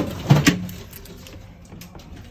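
Handle and latch of a heavy balcony door clunking as someone tries to work out how to open it: a few sharp knocks in the first half second, then quieter handling.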